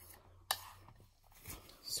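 A metal knife clicks once against a dish about half a second in, followed by faint rustling of a paper towel as the frosting is wiped off the blade near the end.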